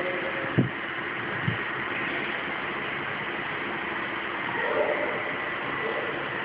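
Steady noisy background hum with no chanting, marked by two short low thumps about half a second and a second and a half in.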